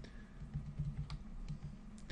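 A few light clicks and taps on a laptop as its web page is scrolled, spaced about half a second apart.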